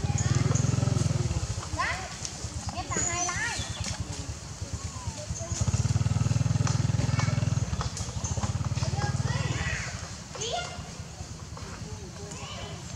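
A low, throbbing engine hum that swells loud twice, with short, high, rising-and-falling calls scattered over it.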